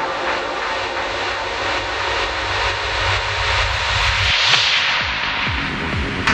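Psychedelic trance music in a section built on a swelling, jet-like filtered noise sweep that peaks about four and a half seconds in, with low pulsing bass notes coming back in the second half.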